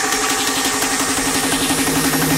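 Drum and bass build-up: a buzzing synth note stutters in rapid even pulses under a rising noise sweep.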